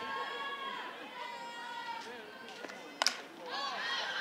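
Softball bat striking a pitched ball once, a sharp crack with a brief ring about three seconds in, amid steady crowd voices that swell just after the hit.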